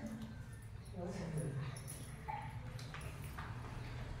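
Faint, indistinct background voices of people talking in a room, with a few soft taps or knocks.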